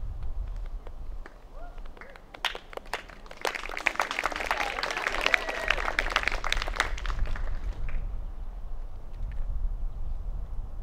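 A short round of audience applause. It starts with scattered claps about two and a half seconds in, fills out, and dies away about seven seconds in, leaving a low outdoor rumble.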